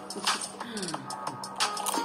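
Crispy fried banana chips crunching as they are bitten and chewed close to the microphone: one crunch soon after the start and a cluster of sharper crunches near the end, over background music.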